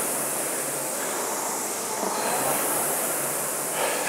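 Concept2 indoor rower's air-braked fan flywheel whirring as it is rowed, swelling with each drive at a slow rate of about one stroke every three seconds.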